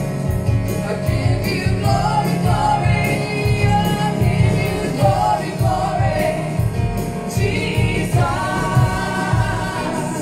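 Gospel worship song: singing over keyboard accompaniment with a steady beat.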